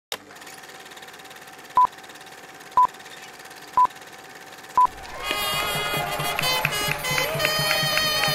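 Film countdown leader beeps: four short, loud, high beeps one second apart over a faint steady tone and hiss. About five seconds in, music starts with a steady beat.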